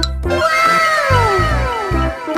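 Bouncy background music with a steady beat. Over it, a long meow-like cry falls slowly in pitch for about a second and a half.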